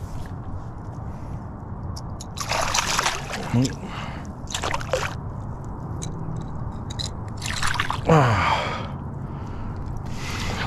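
Water splashing in short bursts as a hooked hybrid striped bass thrashes at the side of a kayak and is grabbed by hand and lifted out, about three seconds in, again near five seconds and near eight seconds. Short wordless exclamations are heard around the splashes, the longer one falling in pitch near the end, over a steady low hum.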